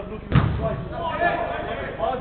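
A single loud, deep thud of a football impact about a third of a second in.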